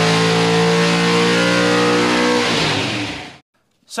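A loud engine held at high revs, steady in pitch, fading away about three seconds in.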